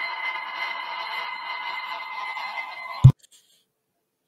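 Sphere magnet spinning in a drinking glass inside a coil: a steady whirring, rattling sound against the glass with a high ringing tone. About three seconds in comes a loud thump, and then all sound cuts off abruptly.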